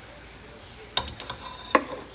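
Metal spatula scooping cooked rice out of a steel pot, with two sharp knocks of utensil on pot, one about halfway through and a louder one near the end, and a few light clicks between.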